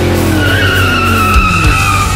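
Rock music with a long, wavering high squealing tone held over it and a falling slide in pitch at the start, between sung lines.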